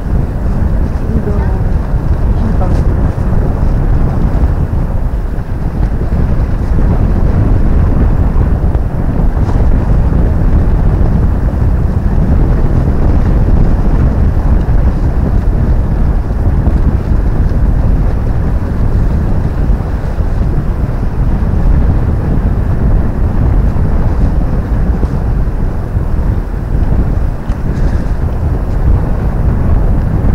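Wind buffeting the camera microphone: a loud, steady low rumble that rises and falls slightly.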